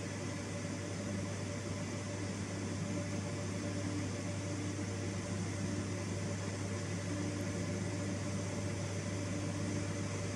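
Steady whir and low hum of an HP ProCurve chassis PoE switch's cooling fans and power-supply fans running as the switch powers back up and goes through its self-test.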